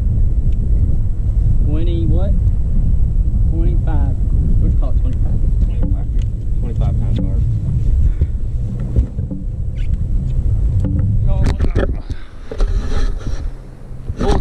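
Wind buffeting the microphone: a loud, steady low rumble, with a few short bursts of voices over it.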